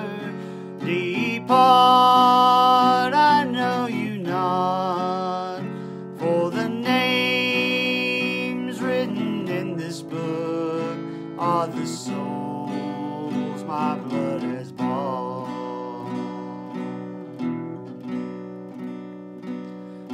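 Acoustic guitar strummed as accompaniment to a slow gospel song, with a man's voice singing long held notes at times.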